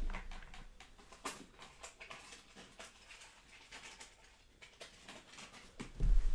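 Faint, scattered knocks and shuffling from a person moving about a room away from the microphone, over a low steady room hum.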